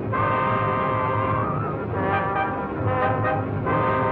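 Opening-title music from a 1935 film serial: long held chords that change about every two seconds, over a low hum, on a dull, narrow-sounding old soundtrack.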